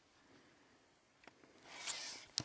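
Mostly near silence, then a faint click about a second in and a soft scraping rustle that swells near the end.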